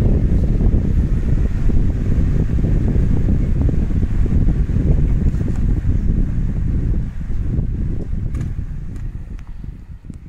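A table fan running off a solar panel blows straight at the microphone, making a steady low wind rumble that fades over the last few seconds.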